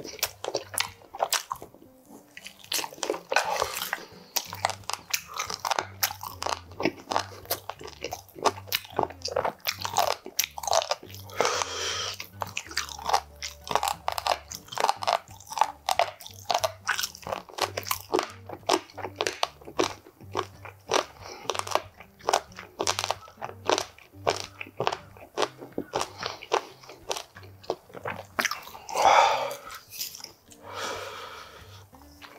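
Close-miked eating of oven-roasted chicken wings: steady crunching and chewing, with many quick sharp crunches and a few louder bites.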